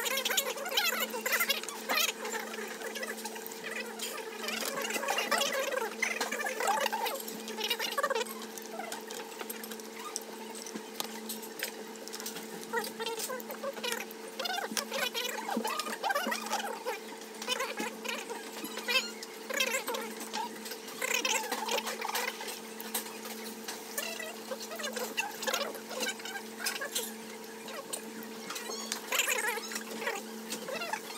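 Restaurant table sounds of a meal: scattered small clicks and taps of chopsticks against a lacquered bowl and dishes, with faint voices of other diners, over a steady low hum.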